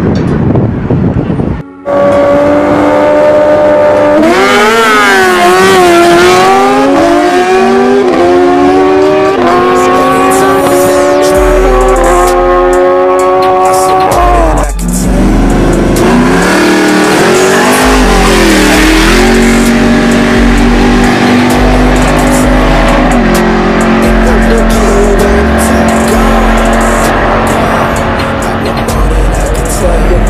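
Drag-racing engines at full throttle, their pitch climbing and then dropping at each gear shift, several times over; after a break about halfway through, another engine revs up and then holds a steady note. A deep, pulsing music bass line runs underneath from about a third of the way in.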